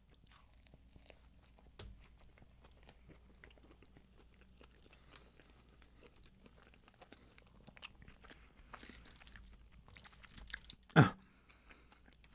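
Close-up chewing of a bite of a breaded-steak torta: faint crisp crunches and wet mouth clicks. One short, much louder sound comes near the end.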